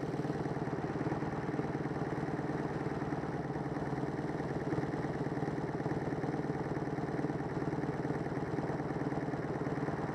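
Motorcycle engine idling steadily at a standstill.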